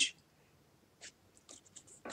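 A few faint, brief scrapes of a felt whiteboard eraser being handled at the board, once about a second in and a few more near the end.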